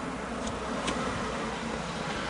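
Steady hum inside a car cabin while a man draws on a tobacco pipe, with a couple of faint clicks about half a second and a second in.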